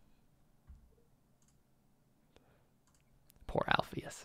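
Quiet room tone broken by a few faint, scattered clicks, then a person's voice starting to speak near the end.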